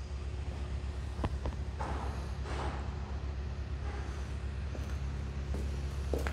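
Steady low machine hum with a faint background of noise, broken by a short knock about a second in.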